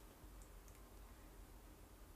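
Near silence: faint room tone with a couple of very faint light clicks.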